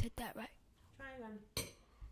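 Quiet voices, with one drawn-out voiced sound about a second in, and a couple of sharp clinks, the clearest just after it.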